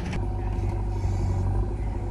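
Massey Ferguson 241 DI tractor's three-cylinder diesel engine running steadily at low revs.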